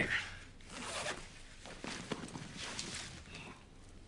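Rustling and rasping of a bag and soft fabric body-armour vests being pulled out and handled, a run of short, irregular, zip-like strokes.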